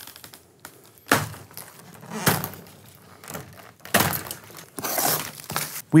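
Plastic stretch wrap, tape and cardboard corner guards being torn and pulled off a glass door panel: four noisy bursts of ripping about a second apart, the last the longest.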